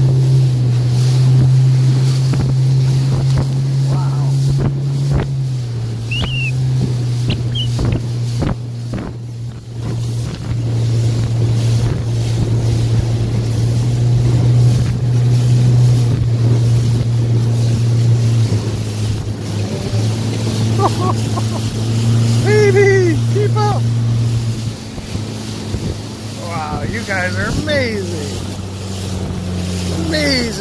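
Yamaha outboard motor on a Boston Whaler running steadily at speed, a loud low drone over the rush of water and wind. Its note drops a little about five seconds in and again near the end.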